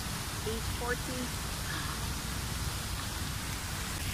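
Steady outdoor noise of wind buffeting a phone microphone, a rough rumble with hiss over it, broken by one short spoken word about a second in.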